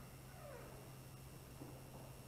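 Dry-erase marker squeaking faintly on a whiteboard, one falling squeak about half a second in, over a steady low room hum.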